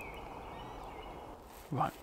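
Quiet rural outdoor ambience: a steady low hiss of open air, with a faint thin high tone in the first second. Near the end a man says "Right."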